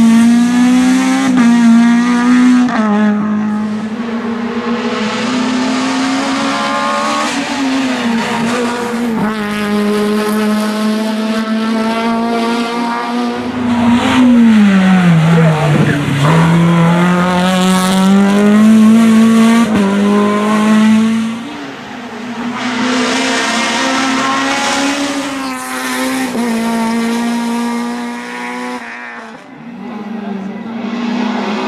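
Honda Civic race car's four-cylinder engine held at high revs up a winding hillclimb, the pitch wavering with throttle and gear changes. About halfway the revs fall steeply for a tight bend and climb again, and the sound fades and returns as the car passes bends near the end.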